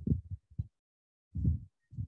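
The end of a spoken word, then short, low, muffled thuds over a video-call line, about half a second apart, with dead silence between them.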